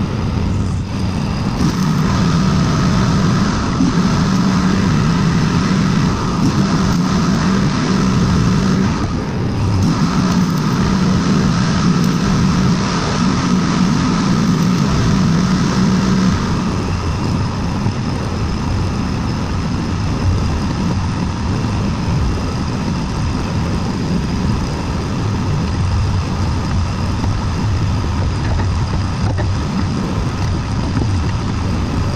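An engine running steadily, with a low hum that drops to a lower pitch about sixteen seconds in.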